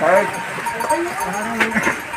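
Several people's voices talking at once, with a brief sharp sound about one and a half seconds in.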